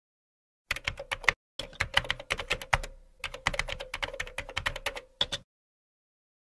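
Computer keyboard typing sound effect: a rapid run of keystroke clicks with two short pauses, ending about half a second before the end, over a faint steady tone.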